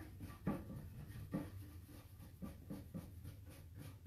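Bristle brush scrubbing over silver leaf in a series of short, irregular, faint strokes, brushing the loose leaf off the areas without adhesive so the stencil pattern shows.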